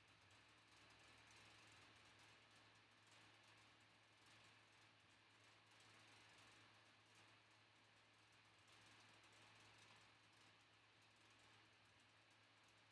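Near silence: faint room tone with a low steady hum and scattered faint ticks.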